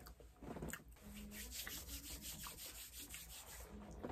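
Faint rustling and rubbing of a food wrapper as leftover food is wrapped up, a quick run of scratchy strokes from about a second in until near the end.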